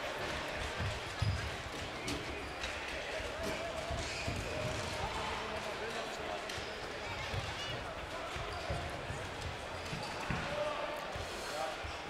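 A football being kicked and bouncing on an indoor sports-hall court, as scattered dull thuds over the steady murmur of a crowd and occasional shouts.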